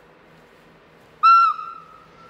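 Train horn on an approaching Matterhorn Gotthard Bahn locomotive: one short, loud blast about a second in, followed by a fainter held note that fades out.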